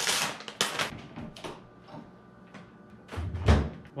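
Rustles and knocks of a laundry basket and a plastic detergent tub being handled, then a louder thump near the end as the laundry closet door opens onto the stacked washer and dryer.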